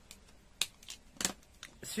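Plastic marker pens clicking against each other as they are handled, a few short sharp clicks spaced out over the two seconds.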